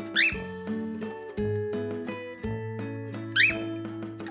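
Background music with a steady run of melodic notes, cut across by two short, sharply rising chirps from a cockatiel: one just after the start and one about three and a half seconds in, each louder than the music.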